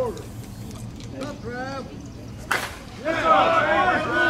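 Slowpitch softball bat striking the ball for a high fly ball: a single sharp crack about two and a half seconds in, then voices calling out.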